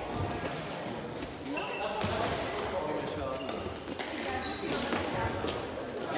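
Several sharp knocks echoing in a large sports hall, with a cluster near the end, over people talking.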